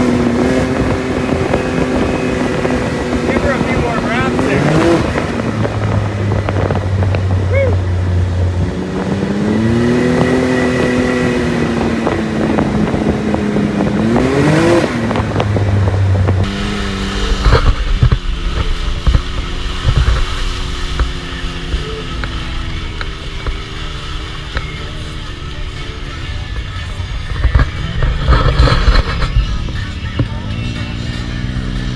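Can-Am Maverick X3 side-by-side with an MBRP aftermarket exhaust, heard from the cab while driving: the engine rises and falls in pitch as the revs change, climbing sharply twice in the first half. After a sudden change partway through, the engine runs lower and steadier, with scattered thumps.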